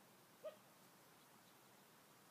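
Near silence, broken about half a second in by one short, pitched squeak.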